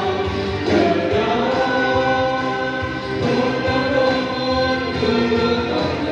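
A small vocal ensemble singing a Vietnamese song, with notes held for up to about a second.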